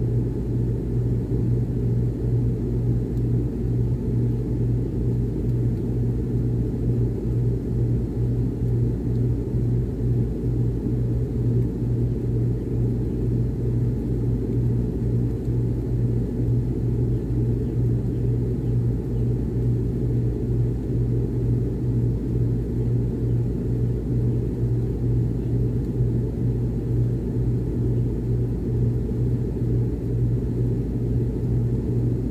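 Miller package air conditioner running, heard at an air register: a steady rush of air with a strong, even low hum under it.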